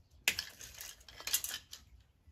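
Small wire cutters snipping and clicking on an artificial floral stem, with crackly rustling of its plastic glittery sprigs as it is handled. The two sharpest clicks come about a quarter second in and just past halfway.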